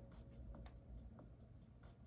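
Near silence with a few faint, scattered ticks of a pen tip on the paper page of a planner during writing.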